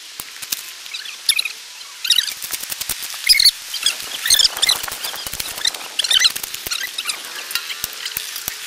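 Long-handled hand tools scraping and knocking in dry dirt as a trail is dug: many short, irregular clicks and knocks. Frequent high, squeaky chirps run alongside, becoming busier after about two seconds.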